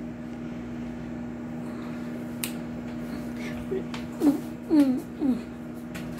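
Microwave oven running with a steady low hum while it heats popcorn. A single sharp click comes a little over two seconds in, and short voice sounds come in the last two seconds.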